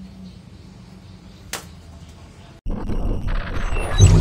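Quiet room tone with a low hum and a single sharp click about a second and a half in, then an abrupt cut to a loud whooshing intro sound effect that builds into synth music.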